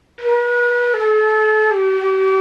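Concert flute playing three held notes that step downward, with an audible airy rush over the tone: a demonstration of the noisy sound made when the flute is turned in too far and the lower lip covers too much of the embouchure hole, so the air swirls hard at the edge.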